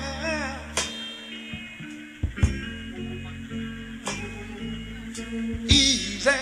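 Live soul band playing a slow, quiet instrumental passage: held bass notes and sustained chords, with a drum and cymbal hit about every second and a half. A held vocal note with vibrato trails off at the start.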